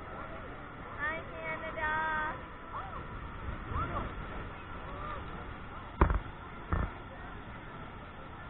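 Muffled sound picked up through a waterproof camera housing: a steady noise bed with indistinct voices and calls from people on board. Two sharp knocks come about six and seven seconds in.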